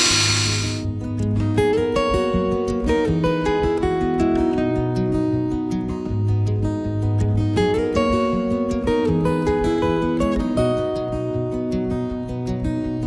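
Background music of plucked acoustic guitar with a steady rhythm. The whine of a power drill boring into hardwood cuts off suddenly just under a second in.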